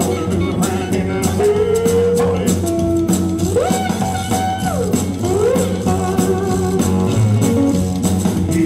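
Live band music led by a three-string cigar box guitar, with drums behind it; in the middle, notes slide up to a held higher pitch and back down.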